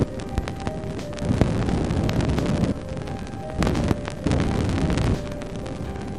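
Cassini spacecraft's radio and plasma wave science instrument recording of a Saturn ring crossing, played as audio: staticky hiss and crackle of dust particles hitting the craft. It comes in surges of rumbling noise that swell and drop back.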